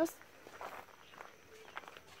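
Footsteps walking on a dirt path, a few faint steps.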